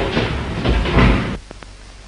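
Loud rattling and knocking over a noisy rush that cuts off suddenly about one and a half seconds in, leaving only the hiss and crackle of an old film soundtrack.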